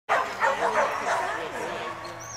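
A dog barking several times in quick succession over the first second and a half, mixed with people's voices.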